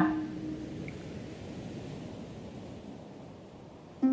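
A pause between spoken and sung parts: faint, even background hiss and room noise, slowly fading, with no distinct sound in it.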